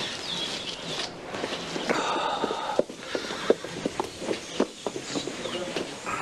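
Footsteps: a run of light, irregular steps, roughly two a second, starting about three seconds in over a faint ambient background.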